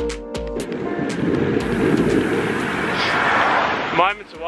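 Background music with plucked notes gives way, about half a second in, to a swelling rush of noise that climbs in pitch. The rush cuts off abruptly at the end.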